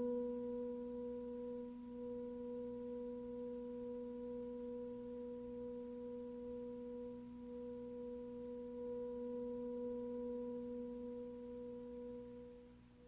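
Background music: a single low electronic note held steadily with a few faint overtones, fading out near the end.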